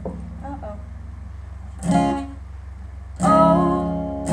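Acoustic guitar strummed. One chord sounds about two seconds in and dies away, then a louder chord just after three seconds rings on as the song opens.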